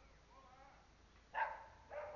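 A dog barking twice, once about a second and a half in and again near the end.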